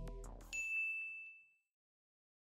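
The last notes of the rap track fade out. About half a second in, a single bright chime from a production-logo sting strikes and rings for about a second before dying away.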